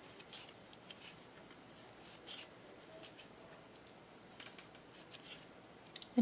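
Faint, irregular ticks and soft rubbing of wooden knitting needles and yarn as a row of knit stitches is worked.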